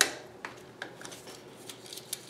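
Small metallic clicks of pliers gripping a bicycle's rear derailleur gear cable: one sharp click at the start, then a few fainter scattered ticks.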